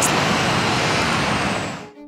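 Steady road traffic noise, an even hiss of passing vehicles, fading out near the end.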